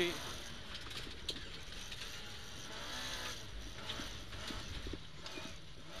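Ford Escort RS2000 rally car's engine heard from inside the cabin on a rally stage. Its revs climb and then fall once about halfway through, over steady road and cabin noise with a few light clicks.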